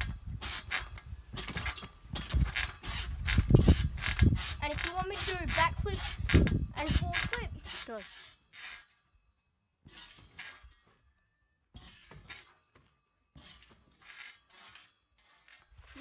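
Trampoline springs clinking and creaking with each bounce, with heavy low thuds from the mat. From about eight seconds in only a few faint scattered clicks remain.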